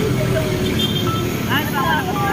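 Voices talking over a steady low hum of road traffic.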